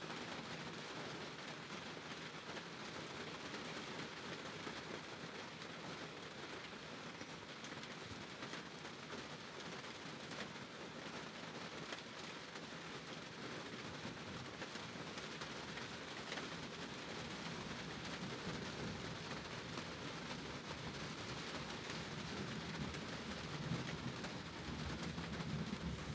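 Heavy thunderstorm rain pouring down in a steady, even hiss, picking up again and growing slightly louder in the second half.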